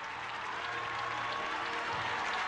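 A large congregation applauding, a dense patter of hand claps.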